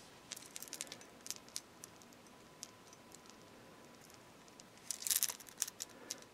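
Faint handling noises from a knife being held and turned in the hand: scattered light clicks and taps in the first couple of seconds, then a short rustle near the end.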